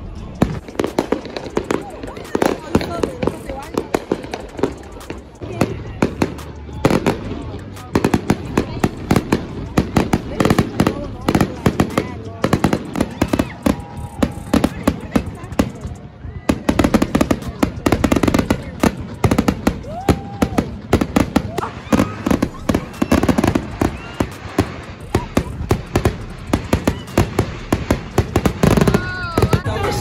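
Fireworks display: aerial shells bursting overhead in a rapid, continuous series of bangs and crackles, with a brief lull about halfway through.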